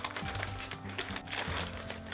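Small empty hermit crab shells clicking and rattling against each other inside a foil-backed plastic bag as it is turned over in the hands, with some crinkling of the bag. Faint background music runs underneath.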